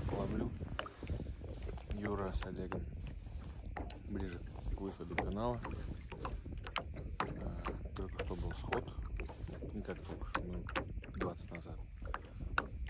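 Small waves lapping and slapping irregularly against a metal boat hull, with wind rumbling on the microphone.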